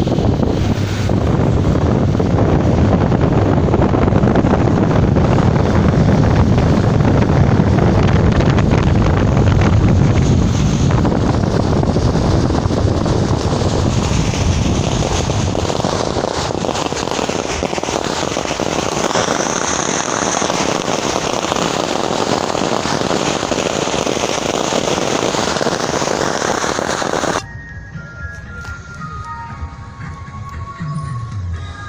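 Long strings of firecrackers going off in a dense, continuous crackle, with a car running underneath. It cuts off suddenly near the end, and faint pitched tones follow.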